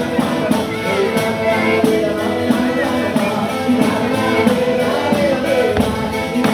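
Live pizzica folk dance music: singing over a fast, steady tambourine beat, with melody instruments.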